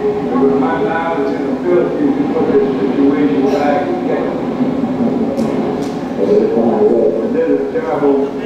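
Indistinct voices on a home camcorder recording made during Hurricane Katrina, over a steady rush of storm wind, played back through a hall's loudspeakers. Two sharp clicks come a little past the middle.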